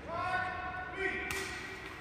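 A sepak takraw ball is kicked once or twice during a rally, giving dull thuds. Under it run distant voices, with one drawn-out call in the first second or so.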